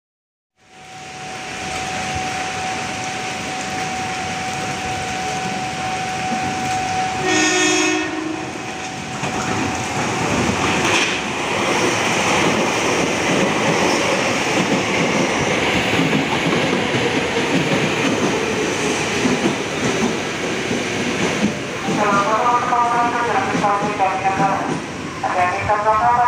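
KRL commuter electric train passing through the station at speed without stopping: a long steady rush of wheels on rails, with a short horn blast about seven seconds in. A voice speaks over it near the end.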